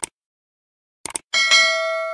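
Sound effects: a short click at the start and a quick double mouse click about a second in, then a bright bell ding that rings on and slowly fades.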